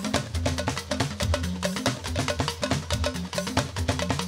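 Fuji band playing an instrumental passage: fast, dense percussion over a repeating bass line, with no vocals.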